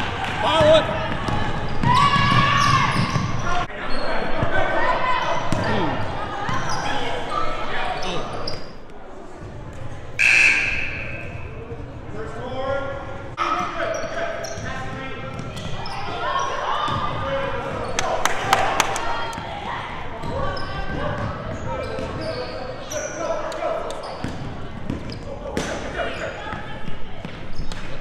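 Basketball bouncing on a hardwood gym floor as it is dribbled up the court, under continual indistinct calling from players and spectators. The large hall makes the sound echo.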